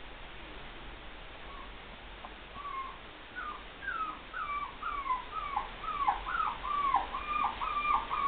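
Poodle puppy whimpering: a run of short, high whines that rise and then fall in pitch. They start faint about a second and a half in and come quicker and louder, reaching about two a second by the end.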